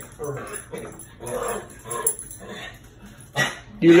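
Dog grumbling: a run of short, low, complaining vocal noises, about two a second, with its collar tags jingling. The dog sounds mad.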